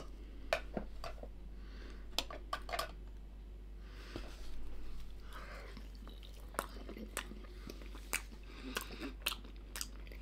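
A person biting into and chewing a soft pastry snack pocket filled with minced meat and barley, with scattered short mouth clicks.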